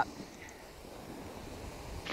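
Faint steady rushing noise of wind and skis sliding on groomed snow.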